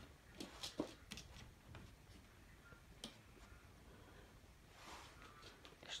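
Near silence, with a few faint clicks and scrapes from a pet raccoon pawing at the floor by a cabinet door, several in the first second and one about three seconds in.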